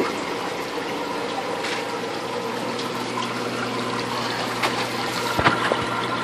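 Steady running and splashing water from a reef aquarium's overflow and sump, with a steady low hum, most likely the pump. A couple of light knocks come near the end.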